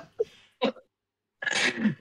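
A man's short, breathy laughter: a few quick bursts, a brief pause, then a breathy puff near the end.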